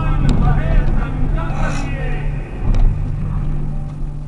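Steady engine and road drone heard from inside a car driving on a dusty, unpaved mountain road, with a voice over it in the first two seconds.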